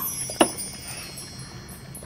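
Soundtrack music with a high, chiming, tinkling texture, and a single sharp click about half a second in.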